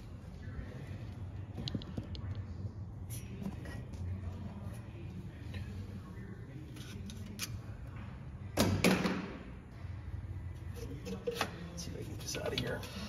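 Hands handling parts on an old engine: scattered small clicks and taps, with one louder noise lasting about half a second about nine seconds in.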